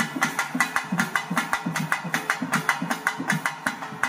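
Pambai and udukkai folk drums played together in a fast, even rhythm of about six strokes a second, the low drum notes bending in pitch.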